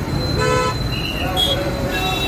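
Road traffic at a busy bus stand, with engine rumble under it; a vehicle horn gives one short toot about half a second in, followed by two brief higher beeps.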